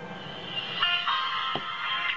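Music starting up about a second in, played from a G15 phone's audio player through its small built-in speaker, thin with little bass; a steady hiss runs before it.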